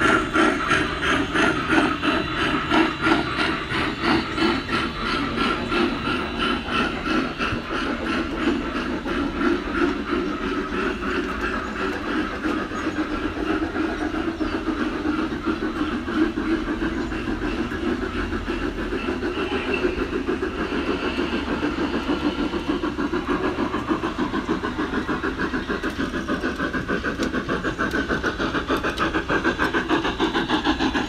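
F-scale model steam locomotive and its train running on the garden railroad track: a fast, steady rhythmic clatter, louder near the end as the train passes close.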